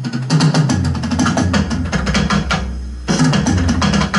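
Fast drum fill with accented strokes on an electronic drum kit: a dense run of rapid hits over a deep low tone, thinning out just before three seconds in and then starting up again.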